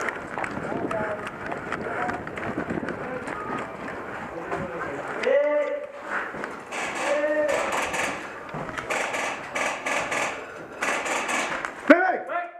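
A player runs in airsoft gear: footsteps and equipment rustling and knocking, with a burst of sharper knocks in the second half. Two short shouted calls come about halfway through.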